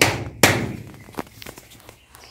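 Two sharp thwacks about half a second apart, each dying away quickly, from a feather fan on a stick being struck against a person's back in blessing.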